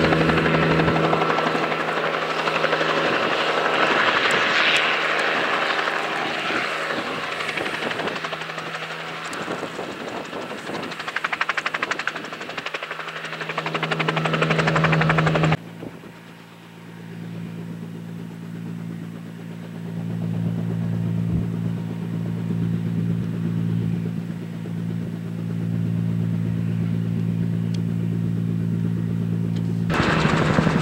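Helicopter flying, a steady engine and rotor hum with a fine rapid beat. About halfway through it suddenly drops in level and sounds duller, then carries on steadily.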